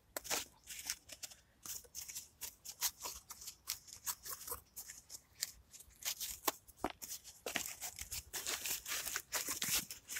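Cardboard being torn, folded and pressed down by hand: an irregular run of crackles and rustles that gets busier in the last few seconds.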